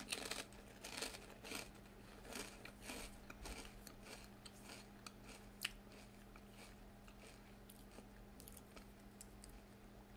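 A ridged potato chip being bitten and chewed with the mouth close to the microphone. Quick crisp crunches come thick in the first few seconds, then thin out to occasional faint ones as the chip is chewed down, over a faint steady hum.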